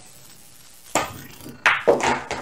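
Pool balls on a billiard table: a sharp click about a second in as the cue ball strikes the object ball on a half-ball hit, then a second knock shortly after as the object ball drops into the corner pocket.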